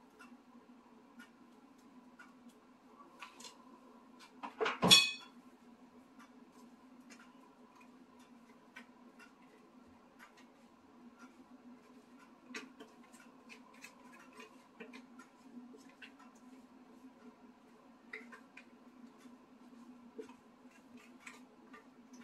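A silicone spatula scraping and tapping inside a plastic blender jar, making small faint clicks, as thick lentil batter is emptied into a glass bowl; one sharp knock about five seconds in. A steady low hum runs underneath.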